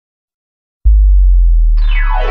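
Start of an electronic dance remix: silence, then a loud, deep synth bass note comes in under a second in and holds. Near the end a high synth sweep begins gliding down in pitch.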